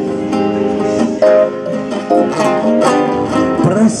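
Live acoustic guitar strummed with keyboard accompaniment in a short instrumental break of a song, chords changing every second or so; the lead vocal comes back in near the end.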